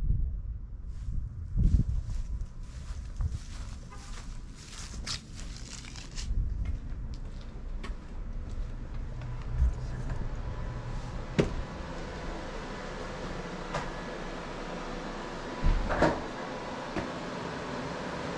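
Footsteps and wind on the microphone, then an exterior door's lever handle and latch worked and the door opened and shut, with a few sharp clicks and knocks, the loudest near the end. A steady low hum runs under the second half.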